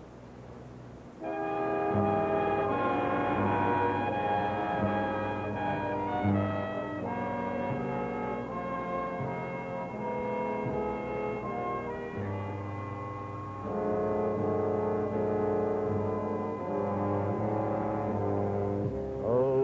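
Big band orchestra playing a slow introduction of held brass chords, entering about a second in and changing chord every second or so. The sound is narrow and muffled, as on an old AM radio aircheck.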